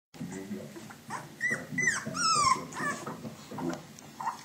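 Young puppies whining and squealing. From about a second and a half in comes a run of high squeals that fall in pitch, the loudest just before halfway.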